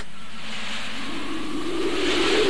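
Cartoon sound effect: a steady, wind-like rushing noise with a low note that slowly rises and swells.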